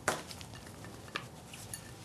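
A few light clinks and taps of a dish against a glass salad bowl as cubed avocado is tipped in: one sharp clink at the start, fainter ticks after, and another clear clink about a second in.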